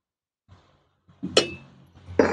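A metal spatula clinking once against metal cookware, a single sharp clink with a brief ring about a second and a half in, followed by a faint low hum.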